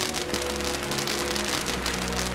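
A firework starting to burn suddenly and spraying sparks with a dense, steady crackling hiss, over soft background music.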